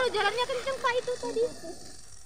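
Indistinct background voices of people talking, fading out in the second half.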